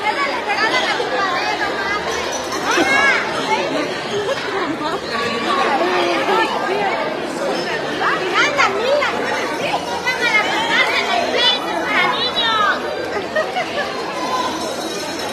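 A crowd of children shouting and chattering over one another, with high-pitched squeals and shrieks that come thickest in the second half.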